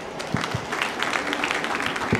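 Congregation applauding: dense, irregular clapping that swells in and holds steady, with a few low thumps mixed in.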